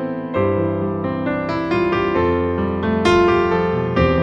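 Solo piano music played on a digital keyboard with a piano sound: an instrumental version of a slow pop ballad, a melody over sustained chords and bass notes, with new chords struck roughly once a second.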